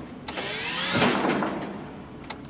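Small electric utility cart's motor whining, rising in pitch over about the first second as it accelerates, then fading. A click comes near the start.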